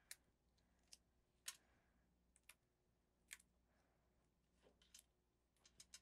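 Near silence broken by faint, scattered light clicks and taps of paper pieces being handled and pressed down onto a card, about eight in all at uneven intervals.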